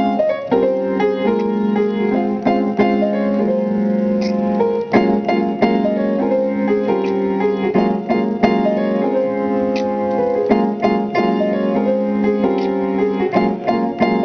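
Grand piano played with both hands: a continuous stream of notes over held chords in the lower middle range.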